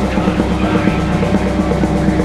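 Rock drum kit played hard and fast along with a recorded hardcore punk song, with sustained guitar and bass underneath the drum hits.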